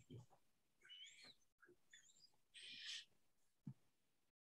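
Near silence on a video call: room tone with a few faint, short high gliding sounds about a second in, a brief faint hiss near three seconds and a small click near the end.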